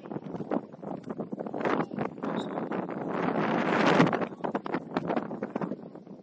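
Wind buffeting the microphone, building to its loudest about four seconds in and then easing off.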